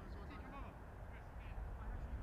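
Open-air ambience at the side of a soccer pitch: a steady low rumble with short, scattered distant shouts and calls from the players, some with a quack-like sound.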